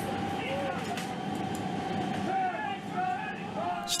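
Steady engine drone inside a military transport aircraft's cargo hold, with a steady mid-pitched hum in it. Faint voices call out a few times over the noise.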